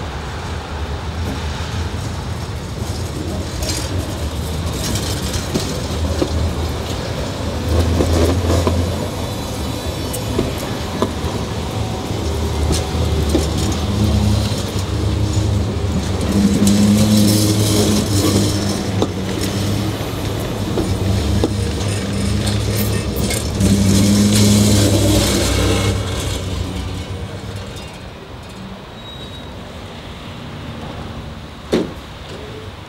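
Hannover Stadtbahn TW 6000 tram running slowly past and round the terminal loop: a low steady electric hum with the rumble and hiss of steel wheels on rail, swelling several times as it passes close. It quietens near the end as it draws up to the stop.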